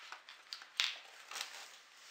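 Rustling and crinkling of a shopping bag as hands rummage through it for items, in a few short rustles, the loudest a little under a second in.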